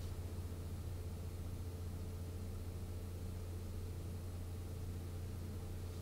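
Steady low hum with a faint even hiss: quiet room tone.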